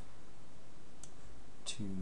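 Two computer mouse clicks, one about a second in and another just before the end.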